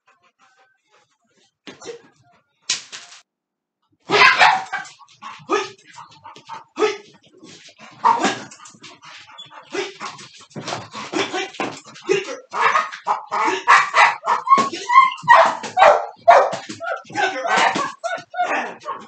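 Pit bull puppy barking and scuffling as she leaps at and tugs on a bite toy, the commotion starting about four seconds in and running on busily after that.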